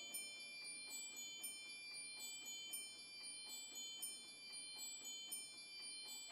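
Faint high chimes ringing, a new note struck about every half second over a bed of sustained ringing tones, as a piece of music dies away.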